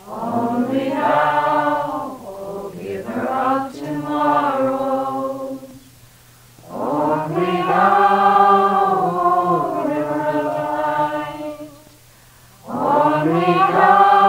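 Devotional chant sung in slow, sustained phrases, three phrases with short breaks between them.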